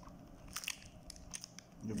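Chewing of a soft filled bread bun, with a few small clicks from the mouth; a man's voice starts near the end.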